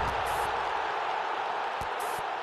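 Outro sound effect under a broadcast end card: the tail of a deep boom rumbling away in the first half second, under a steady noisy wash that slowly fades, with a few faint clicks.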